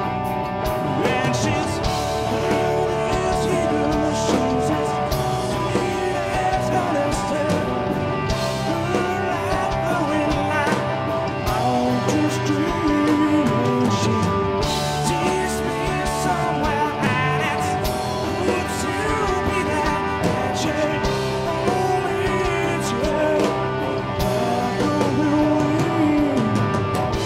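Live rock band playing: a Gibson Les Paul electric guitar carries bending, sustained melody lines over drums and bass.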